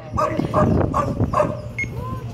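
A dog barking repeatedly, about five short barks in quick succession.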